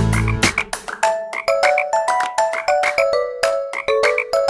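Children's song in which the full backing with bass drops out about half a second in, leaving cartoon frog croaks ("glup-glup") over short, light repeated notes.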